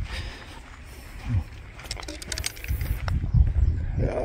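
Wind rumbling on a handheld microphone in uneven low gusts, with a few faint clicks and a brief low voice sound about a second in.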